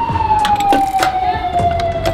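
Emergency vehicle siren wailing: one long tone sliding slowly down in pitch, then swinging back up just after.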